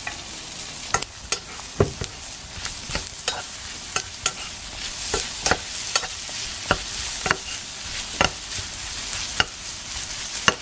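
Food sizzling as it fries in a pan while a utensil stirs it, knocking and scraping against the pan at irregular intervals, about once or twice a second.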